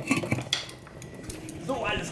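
Stainless steel lid set onto a stainless steel cooking pot: a few metal clinks and clatters in the first half second, then quieter.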